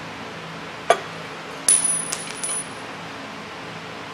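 Metal engine parts clinking as they are handled: a sharp click about a second in, then a bright ringing clink followed by a few lighter taps.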